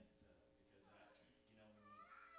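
Near silence with faint, indistinct voices. A high, drawn-out voice-like cry begins right at the end.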